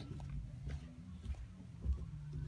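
Muffled footsteps going down carpeted stairs: a few soft low thuds roughly every half second, the last one the loudest.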